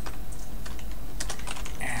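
Typing on a computer keyboard: a few scattered key clicks, then a quick run of keystrokes from a little past halfway as a word is typed, over a steady low hum.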